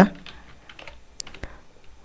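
Computer keyboard being typed on: a short run of faint key clicks.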